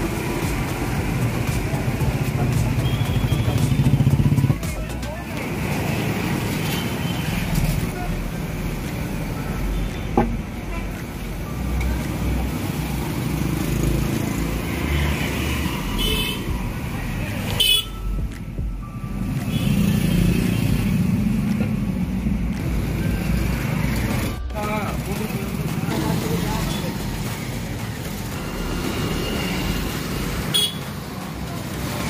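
Busy street traffic: motorcycles and cars passing, with horns tooting now and then, and people talking in the background.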